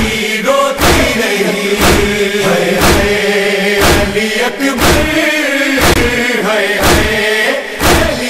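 Noha chanting: voices holding a sustained lament refrain, kept in time by sharp, evenly spaced thumps about once a second, typical of matam chest-beating.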